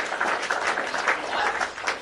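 Dense, steady crackling noise like scattered clapping or static, picked up on an open microphone in a group live call.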